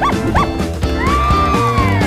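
Upbeat cartoon outro music with a cartoon dog's voice over it: two quick yelps, then a long high cry held from about halfway through.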